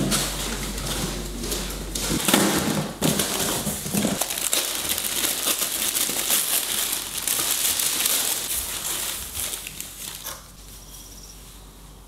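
Tissue paper crinkling and a cardboard box rustling as a parcel is opened and unpacked by hand. The handling noise dies away about ten seconds in.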